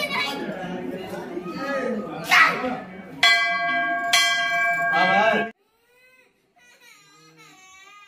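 Hindu temple bell ringing over people's voices, struck sharply twice about a second apart near the middle, each strike ringing on with a steady metallic tone. The sound cuts off suddenly a little after five seconds in, leaving only faint voices.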